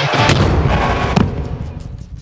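Trailer sound-design impact: a heavy boom at the start and a sharp hit about a second in, followed by fast repeating echoes that fade away.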